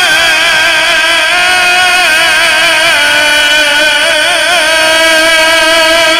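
Male Quran reciter chanting in melodic mujawwad style, holding one long note with rapid wavering ornaments in the pitch, amplified through a microphone.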